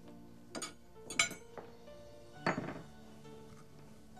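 Knife and fork clinking and scraping against a plate as a steak is cut: a few sharp clinks, the loudest about a second in, and a longer scrape past the middle, over soft background music with held notes.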